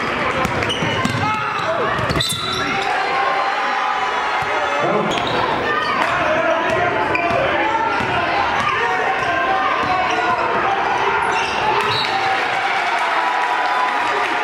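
A basketball being dribbled on a hardwood gym floor, with indistinct players' and spectators' voices calling out throughout in the gym.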